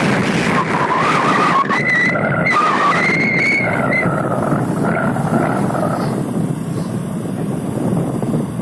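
Riding noise on a moving motorcycle: wind rushing over the microphone with the engine running. A wavering whine rises in pitch through the first half and fades after about four seconds.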